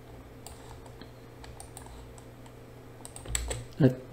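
Computer keyboard keystrokes, a scattered series of separate light clicks while a document is being edited, over a steady low hum.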